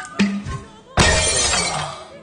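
Glass jar smashing: a sudden loud crash about a second in, with the shattering dying away over most of a second, over film-score music. A short dull thump comes shortly after the start.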